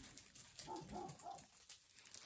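Faint, muffled dog barking: three short barks in quick succession about halfway through.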